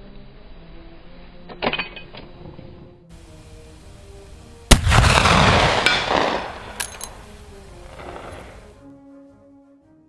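A Mk I Martini-Henry rifle firing one .577/450 black-powder round about halfway through: a sharp crack followed by a rolling report that dies away over more than a second. A short clatter comes earlier, and soft background music with held notes runs underneath.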